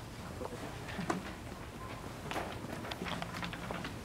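Scattered footsteps and light knocks over low room noise, irregular and with no steady rhythm.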